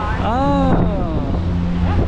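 Steady wind rush and a constant low hum on the deck of a moving cruise ship, with a person's voice calling out once near the start, its pitch rising and then falling.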